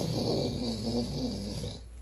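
A person's low, wordless groan, wavering in pitch and fading out near the end.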